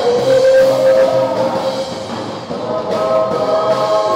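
Live worship band: several singers on microphones singing a Tagalog song over electric guitars and a drum kit. The voices hold a long note, drop back briefly around the middle, and start a new line about three seconds in.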